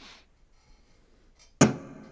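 A single chord strummed on a Yamaha CSF-TA TransAcoustic parlor acoustic guitar about a second and a half in. The guitar plays through its pickup into an AER acoustic amp with hall reverb, and the chord rings out with a long, wide reverb tail.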